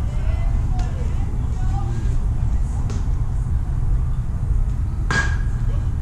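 Distant, indistinct voices of players and spectators at a baseball field over a steady low rumble, with one short sharp sound about five seconds in.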